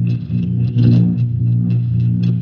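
Guitar played solo, low notes picked several times a second and ringing into one another.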